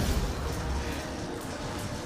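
Sound effect of two magic energy beams clashing: a steady, dense crackling rumble, heaviest at the start.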